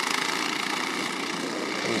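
Several go-kart engines running steadily together as the karts race around the track.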